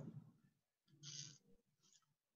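Near silence on an open call line, with one faint, brief sound about a second in.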